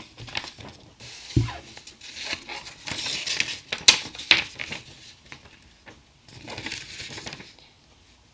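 Sheets of paper rustling and crinkling as folded paper triangles are opened out and pressed flat by hand, in irregular bursts with a few sharp crackles in the middle. The rustling dies away shortly before the end.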